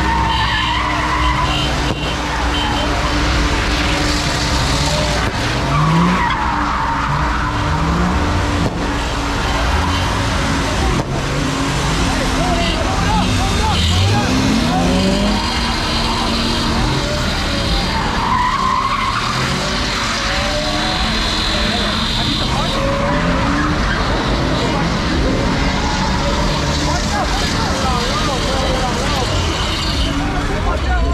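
A car doing a burnout, its engine revving in repeated rising and falling sweeps while the tyres skid and squeal. A crowd shouts and talks throughout.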